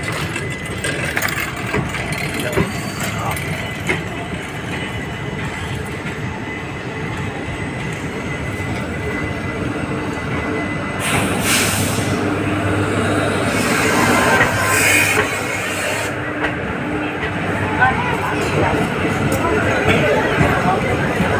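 Passenger train moving slowly through a station: a steady rumble of coaches with voices around it, and a hiss about eleven seconds in and again for a couple of seconds soon after.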